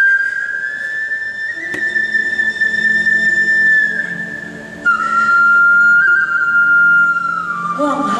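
Stage accompaniment music: a flute playing slow, long held notes that step between a few pitches, with a low sustained accompaniment joining about two seconds in.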